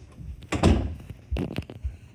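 A door being shut with a loud thump about half a second in, followed by three lighter knocks.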